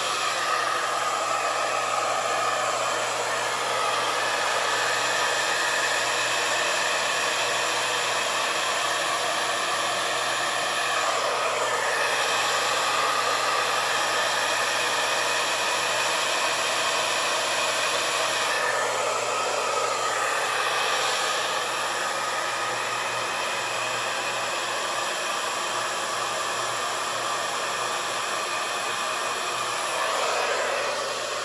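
Handheld hair dryer running on its cool setting, a steady rush of air blown across wet fluid acrylic paint on a canvas. Its tone shifts briefly about eleven and twenty seconds in, and it runs a little quieter over the last third.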